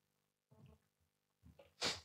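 A short, sharp burst of a person's breath near the end, the loudest sound, after a few faint low sounds.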